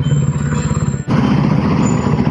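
Motorcycle engines running at low speed while the bikes roll into an underground garage, with an even pulsing beat. The sound dips briefly about halfway through and then picks up again.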